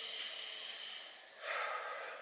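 A man drawing a slow, deep breath in, lasting about a second, followed by a shorter breath sound near the end.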